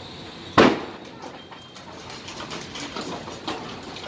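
A single sharp bang about half a second in, trailing off briefly, then scattered crackling pops from a burning house heard from a distance.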